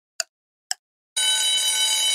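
Quiz countdown timer sound effect: two sharp ticks half a second apart, then a loud, steady ringing alarm from about a second in, signalling that time is up.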